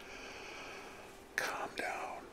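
A man's breathy whispering, ending in two short, sharp breathy bursts a little past halfway through.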